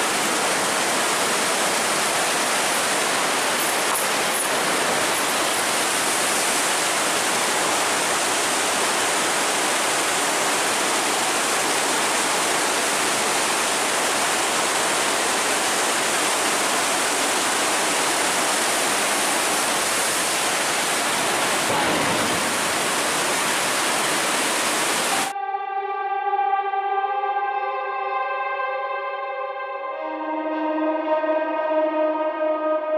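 Water rushing through an open sluice gate: a loud, steady roar. About 25 seconds in it cuts off abruptly and music with plucked, guitar-like notes takes over.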